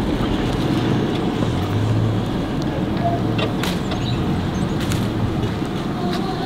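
Car cabin noise while driving: a steady low rumble of engine and road noise, with a few light clicks.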